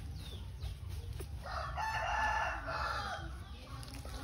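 A rooster crowing once, one long call of about two seconds in the middle that falls off at the end, with faint small-bird chirps before it.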